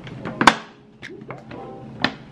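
Hard plastic gun lockbox lid closed on a pistol: one sharp thunk about half a second in, then a few faint clicks as the box is handled.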